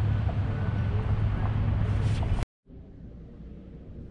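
Steady rushing noise with a low rumble outdoors, cutting off suddenly about two and a half seconds in. Quiet indoor room tone follows.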